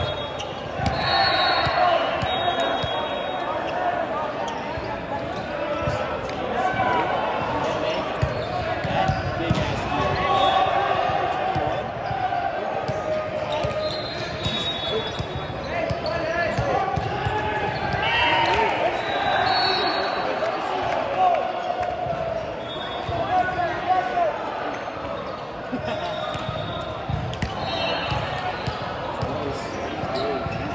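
Sports-hall din around a volleyball court: indistinct chatter and calls from players and spectators, with balls bouncing and knocking and short high squeaks, echoing in a large hall.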